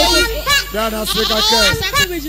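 A man announcing, speaking loudly in animated, drawn-out phrases.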